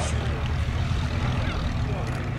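Miles Magister's de Havilland Gipsy Major four-cylinder engine running steadily at low power as the aircraft taxis on grass.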